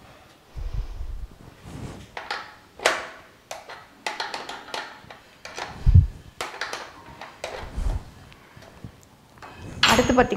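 Metal clinks, taps and scrapes, with a few dull thumps, as a gas stove's burner tube and its gas pipe are loosened and handled in the steel stove frame. The loudest thump comes about six seconds in.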